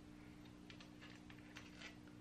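Near silence: a steady low hum of room tone, with a few faint metal ticks as a camshaft cap bolt is turned in by hand.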